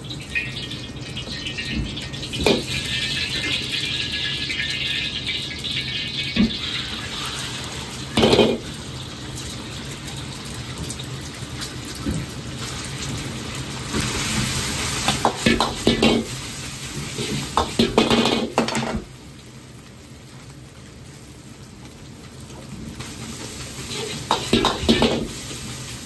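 Gas wok burner running with a steady low roar under a carbon-steel wok as hot oil and then egg and rice sizzle in it. Metal knocks of the ladle and wok come singly at first, then in a quick cluster with a burst of sizzling partway through, before it goes quieter near the end.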